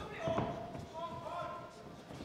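Dull thuds of boxers' feet on the ring canvas, with an indistinct distant shout in a large hall about a second in.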